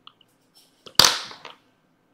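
Light computer-mouse clicks, then one sharp knock about a second in that dies away within half a second, while the mouse is misbehaving.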